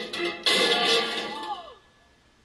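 Television soundtrack played through computer speakers: music, then a sudden loud noisy burst about half a second in that fades away over about a second.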